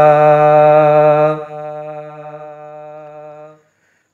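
A man's singing voice holding the long final note of a naat line, unaccompanied. About a second and a half in it drops to a quieter steady hum, which fades out shortly before the end.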